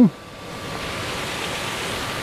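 Steady rushing hiss of a water jet from a B multipurpose branch nozzle without mouthpiece, driven by hydrant pressure alone (about 5 bar) while the portable fire pump's engine is not yet started.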